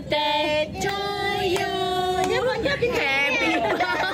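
Women and children singing together as a group, with a long held note about a second in, then more broken voices and talking mixing in near the end.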